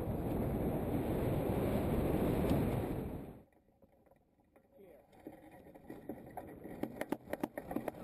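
Wind buffeting the microphone of a camera mounted on a hang glider in flight, cutting off suddenly about three seconds in. After a short quiet, a run of sharp clicks and knocks builds toward the end as the pilot runs down the grass slope to launch.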